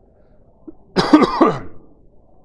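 A man clears his throat: a harsh two-part burst, falling in pitch, about a second in.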